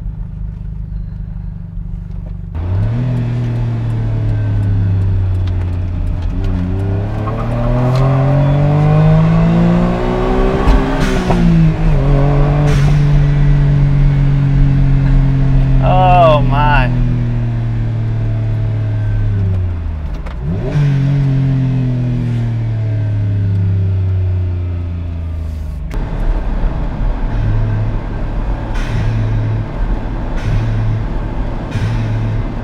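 A kei car's small 660 cc three-cylinder engine pulling hard, its pitch climbing and dropping at each gear change, then holding a steady cruise before easing off near the end. A brief warbling high whistle sounds about halfway through.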